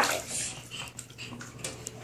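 Bath water lapping and splashing softly in a bathtub as a child moves in it, with faint small clicks and a steady low hum underneath; a high voice trails off, falling in pitch, at the very start.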